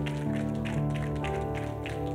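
Soft background keyboard music: sustained chords that change once or twice, over a steady pulsing low note.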